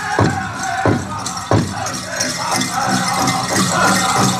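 Powwow drum group: a large drum struck in steady beats, about three every two seconds, under high-pitched group singing. The drum beats stop about a second and a half in while the singing carries on, with a high rattle over it.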